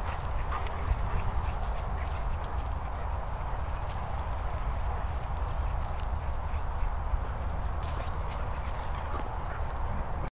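Several dogs romping together on grass: scuffling paws and bodies in an irregular patter, over a steady low rumble of wind on the microphone.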